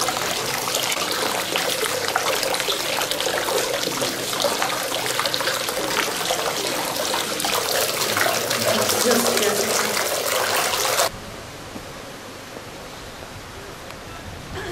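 Water pouring and splashing steadily from a fountain, with voices and a laugh in the background. About eleven seconds in, the sound cuts abruptly to a much quieter, even hiss.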